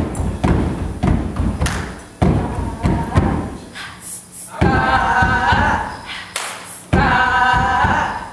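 Gospel music with a choir and a heavy, thumping low beat; the choir holds a long chord twice in the second half.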